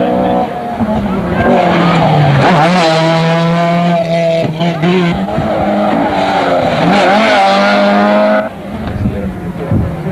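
Rally car engine revving hard as the car approaches and passes at speed, its pitch climbing and then dropping several times as it shifts and lifts off for corners. The sound falls away sharply about eight and a half seconds in.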